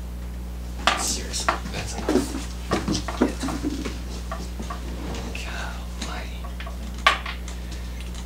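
Small metal fly-tying tools (scissors and a bobbin holder) clicking and clinking as they are handled at the vise, a scatter of sharp clicks over the first few seconds and one more near the end, over a steady low hum.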